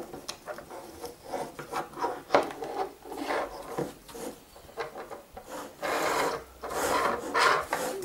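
Irregular rubbing and scraping handling noise in short uneven strokes, louder for a couple of seconds near the end.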